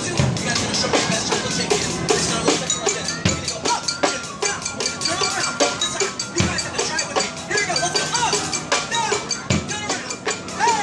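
Street drummers playing a fast, busy beat on barrel drums, with a deep bass hit about every three seconds.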